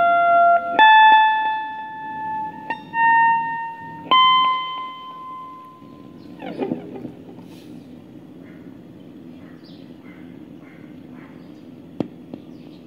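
Electric guitar playing a few single notes, each left to ring, through a Caline Hot Spice mini volume/wah pedal. The playing stops about halfway through, leaving a low steady hum.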